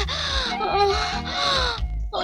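A woman wailing in two long cries that fall in pitch, over background film music.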